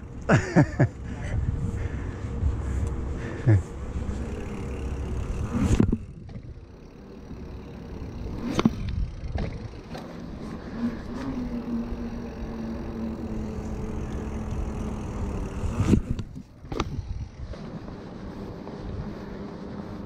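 Wind buffeting the microphone and the rumble of a mountain bike's knobby tyres rolling on a paved path, with a few sharp knocks from bumps.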